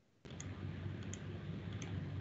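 A few faint mouse clicks over quiet room noise and a low steady hum, after the audio drops out completely for a moment at the start.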